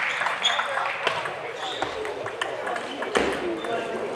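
Scattered sharp clicks of a celluloid table tennis ball bouncing between points, with a few short high squeaks over a murmur of voices in the hall.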